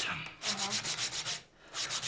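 Hand sanding of wood: quick back-and-forth rubbing strokes, about nine a second, that stop briefly about one and a half seconds in and then start again.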